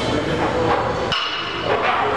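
Gym ambience with voices in the background, and a sharp metallic clank with a short ring about a second in.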